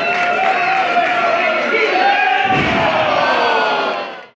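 Wrestling crowd shouting and cheering, with several voices holding long, wavering yells. One drawn-out yell falls in pitch over the second half.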